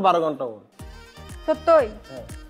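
A man's speech breaks off about half a second in. Then a comic music sting plays, with sharp percussive hits and a short falling cry-like sound effect near the end.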